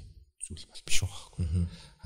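Only speech: a short pause, then a man speaking quietly.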